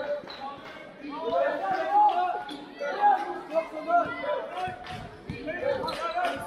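Voices calling and shouting across a sports hall during a basketball game, loudest in the middle, with the ball bouncing on the court floor now and then.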